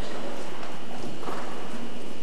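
Hoofbeats of Lipizzaner stallions trotting on the soft footing of an indoor riding arena, over a steady hiss, with voices in the background.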